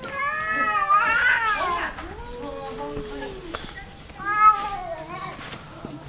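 Several free-roaming island cats meowing in long, drawn-out calls, one after another: a loud, wavering call in the first two seconds, a lower one around three seconds in, and another, the loudest, about four and a half seconds in. The cats are hungry and begging for food at their feeding spot.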